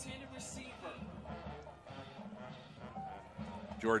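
Football stadium ambience as picked up on the broadcast: crowd voices with music playing in the background, at a moderate level. A commentator's voice comes in near the end.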